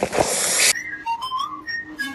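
A plastic bottle of cola erupting in a foam geyser: a loud rushing hiss of spraying, fizzing soda that cuts off abruptly under a second in. A whistled tune follows.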